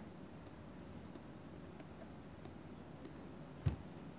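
Faint light taps and scratches of a pen stylus drawing small circles on a tablet, with one sharper knock near the end.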